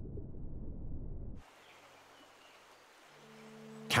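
Muffled low underwater rumble that cuts off abruptly about a second and a half in, leaving near silence; near the end a soft, low, steady musical drone swells in.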